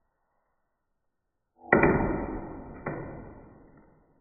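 Two sudden hits a little over a second apart, each dying away slowly. The first, about halfway in, is the louder and rings on for about two seconds.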